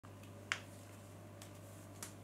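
One sharp click about half a second in and a fainter click near the end, over a steady low hum.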